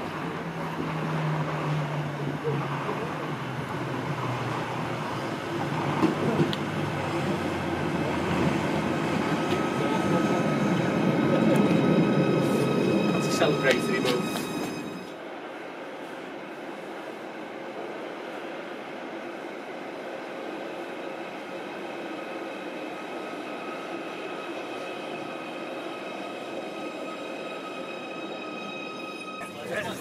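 Merseyrail Class 777 electric train running into a station, its noise growing louder with a few clicks near the end before cutting off suddenly about halfway. Then a quieter steady train hum in an underground station, with several thin steady high tones.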